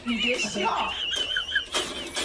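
French bulldog whining: one high, wavering whine lasting about a second and a half, with a person's voice underneath.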